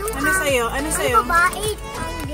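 A young boy's high voice, sliding up and down in pitch, over background music with a steady beat.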